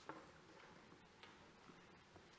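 Near silence with a few faint, sharp clicks and soft shuffling from people moving about, the clearest click just at the start and another a little past a second in.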